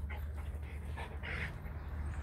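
Soft panting: several short breathy puffs, irregularly spaced, over a steady low hum.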